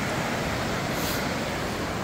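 Steady, even rushing noise of surf on the Lake Superior shore.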